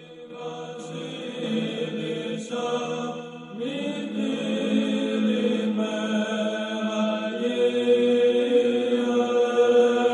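Slow background chant of long-held sung notes, the pitch shifting every couple of seconds and swelling a little louder toward the end.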